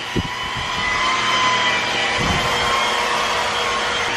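Electric rotary polisher running on car paint with cutting compound, its motor giving a steady whine.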